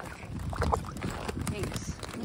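Water sloshing in a cattle waterer's bowl, with small knocks and clicks from floating pieces of ice, as a cow drinks from it and the ice is cleared out.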